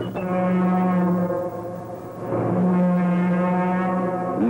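Locomotive horn blowing two long blasts at one steady pitch, with a short break between them.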